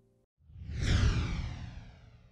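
A whoosh sound effect swelling up about half a second in, its hiss sliding down in pitch as it fades away over a second or so.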